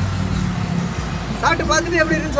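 Steady low hum of a running vehicle engine, with a man's voice starting about one and a half seconds in.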